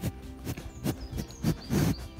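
Several short loud noises from a bull's muzzle right at the microphone, most likely breaths and nose contact, over quiet background music.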